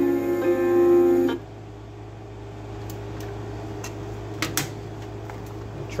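Guitar music from the Sony CFD-S50 boombox's radio, played through its speaker, cuts off abruptly about a second and a half in. A low steady hum follows, broken by a few sharp clicks from the boombox's buttons and its CD lid opening.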